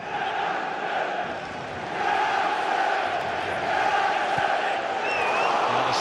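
Football crowd in a stadium chanting: a steady mass of many voices.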